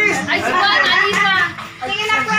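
A group of young people's voices talking and calling out over one another, with a short lull near the end.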